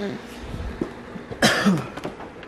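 A single cough about one and a half seconds in.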